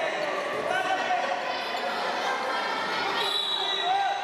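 Several voices calling and shouting at once around a wrestling mat, echoing in a large hall, with one high-pitched call held for under a second about three seconds in.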